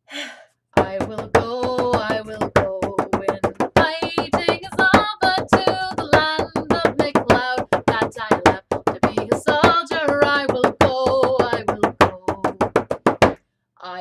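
Bodhrán, an Irish frame drum, beaten with a wooden tipper in a quick, steady rhythm of about four to five strokes a second, with a woman's voice singing the tune over it. The drumming starts about a second in and stops just before the end.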